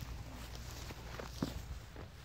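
Footsteps on a grassy dirt track: a few soft steps, the sharpest about a second and a half in, over a low rumble.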